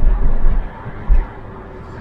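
Interior cabin noise of a 1992 Volvo 940 Turbo driving at about 40 km/h: a low road and engine rumble, heaviest in the first second, with a brief thump about a second in.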